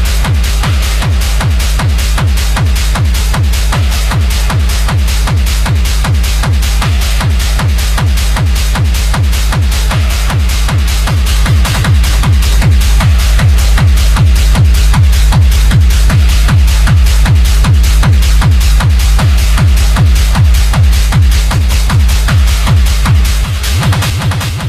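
Techno music from a DJ mix, with a steady kick-drum beat and heavy bass; it gets a little louder about halfway through.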